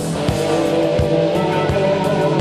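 Rock music: electric guitar with wavering, bent notes over a steady drum beat.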